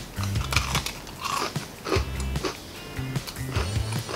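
Biting into and chewing a crunchy Oreo sandwich cookie: a string of irregular crisp crunches, over background music with a steady low bass.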